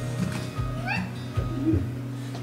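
A cat meowing once, a short upward-rising call, over background music.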